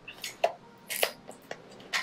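A small cardboard mystery pin box being opened by hand: several short, sharp clicks and crackles of the packaging.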